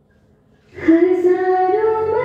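Near silence for most of a second, then music with a high voice singing long held notes starts up about a second in.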